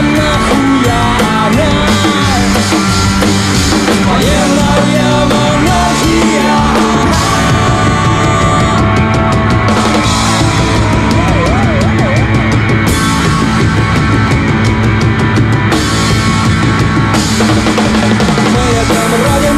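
Punk rock band playing live: distorted electric guitar, bass guitar and drum kit, loud and driving. The cymbals drop out for stretches in the middle.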